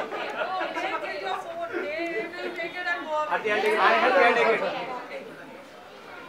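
Several people talking over one another in indistinct chatter, loudest about four seconds in and fading near the end.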